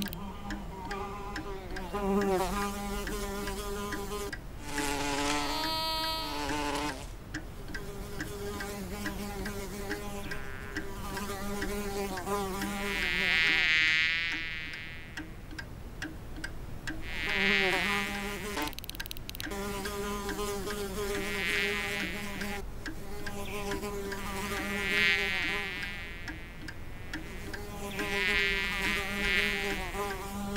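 A bee's buzz, steady and pitched, swelling louder and swooping up and down in pitch every few seconds as it flies close past.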